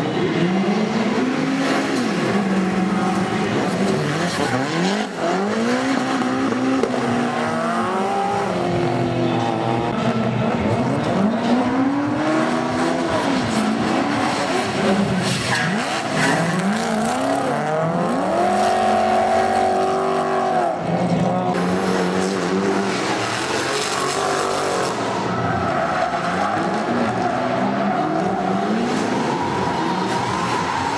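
Drift cars' engines revving up and falling back over and over as they slide through a corner, with tyre squeal and hiss from the spinning rear tyres. A little past the middle, one engine is held high and steady for about two seconds.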